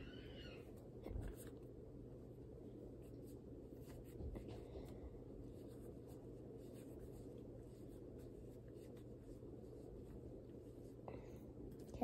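Soft scratchy rubbing of a stick deodorant being applied under the arm, faint against a steady low hum from a spinning ceiling fan, with a couple of soft knocks.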